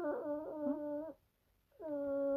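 A person's wordless voice: a drawn-out, wavering 'aah'-like note about a second long, a short pause, then another long, steady note beginning near the end.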